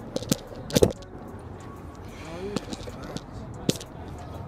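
Handling noise from a selfie stick and its phone mount being adjusted: a handful of sharp clicks and knocks, the loudest about a second in. They sit over a steady low rumble.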